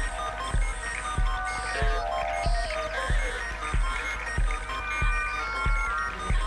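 Electronic music played live on a modular synthesizer: a steady low kick about three beats every two seconds, with gliding synth tones and short hissy high bursts between the beats.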